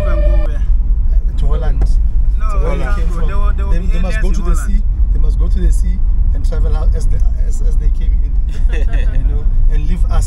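Steady low rumble of a car's engine and tyres heard from inside the cabin while driving, with men's voices talking over it.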